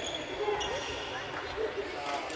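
Badminton rackets striking shuttlecocks and footsteps on a wooden sports-hall floor, a few sharp hits over a busy, echoing background of many players.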